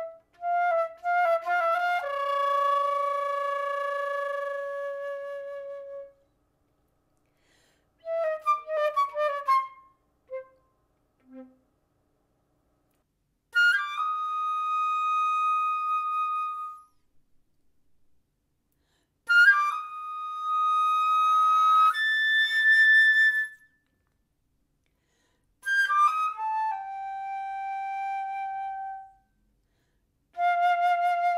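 Solo concert flute playing five separate phrases, each a run of quick tongued notes settling into a long held note, with pauses of near silence between them.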